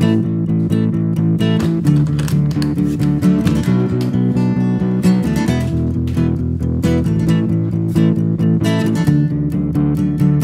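Instrumental song intro: acoustic guitar strummed in a steady rhythm, the chords changing every couple of seconds.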